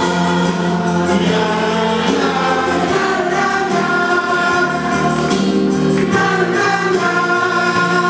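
A man singing long held notes through a handheld microphone and PA, over a recorded backing track.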